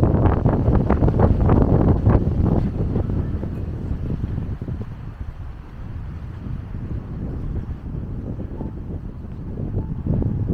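Wind buffeting the microphone as a low, gusty rumble, strongest in the first three seconds and easing off after about four seconds.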